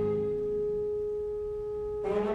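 A single note held steady by the opera orchestra, almost pure in tone and easing slightly in loudness.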